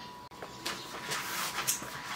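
A few soft, separate clicks over faint room noise, from a laptop's keys or touchpad as the pop-up camera app is opened.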